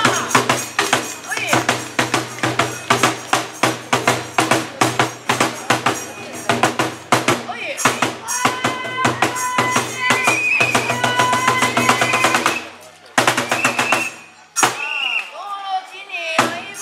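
Bitchu kagura accompaniment: a drum beaten in a fast, even rhythm of about five strokes a second, with jangling metal percussion and held pitched notes, and a chanting voice over it. The beating breaks off briefly near the end and starts again.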